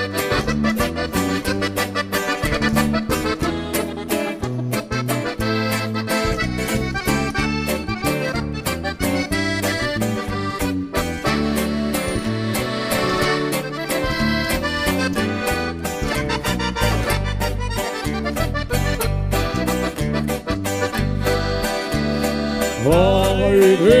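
Norteño band playing live: a button accordion leads an instrumental passage over guitar and a pulsing bass line. A singer's voice comes in near the end.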